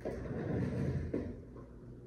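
Rustling and shuffling of a person shifting and turning round in a leather office chair, mostly in the first second, with a couple of soft knocks, then quieter.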